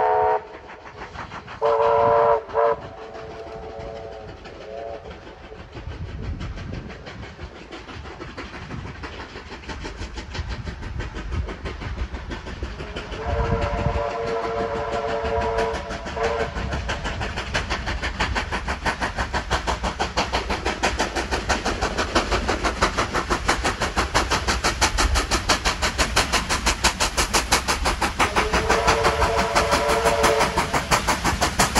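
NSWGR C38 class steam locomotive 3801 approaching with its train. Its whistle sounds a pair of short blasts about two seconds in, a longer one about halfway and another near the end, over a regular exhaust beat that grows louder as the engine comes closer.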